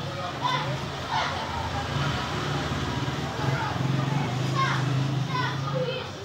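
Children's voices calling and chattering in the background, over a steady low hum.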